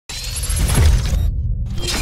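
Electronic intro sting for an animated logo: a loud sound-effect hit with music that starts abruptly. Its high end cuts out briefly about a second and a quarter in, then it comes back before fading.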